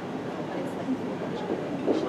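Hoofbeats of a horse cantering on an indoor arena's sand footing, muffled under a steady hall rumble, with a thud near the end.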